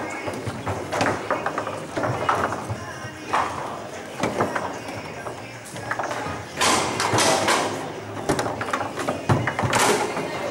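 Foosball table in play: irregular sharp knocks and clacks of the ball being struck by the plastic players and the rods knocking, loudest in a flurry after the middle and again near the end, over background voices chattering.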